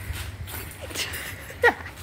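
Running footsteps on a concrete rooftop, a step about every second, over a low rumble of wind and handling on the phone's microphone. About one and a half seconds in, a short, loud, high cry falls sharply in pitch.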